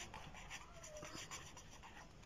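A pen writing a word on paper: faint short scratching strokes.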